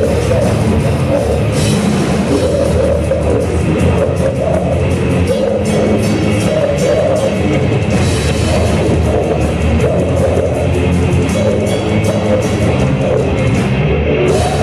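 Death/thrash metal band playing live, loud and unbroken: distorted electric guitars and bass over fast, dense drumming.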